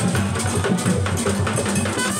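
Music with drums and other percussion keeping a steady, even beat under sustained low notes.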